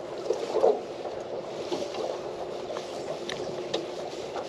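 Steady wash of water and wind around a small fishing boat, with a few short knocks and rustles as a caught snapper is lifted aboard on the line; the loudest knock comes about half a second in.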